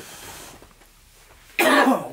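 A man's single loud, harsh cough about a second and a half in, after a quiet stretch. It is a smoker's cough from a hit on a blunt.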